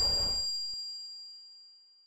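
The end of a TV channel's logo sting fading out. A low rumble and whoosh cut off about half a second in, leaving a high bell-like chime that rings away to nothing.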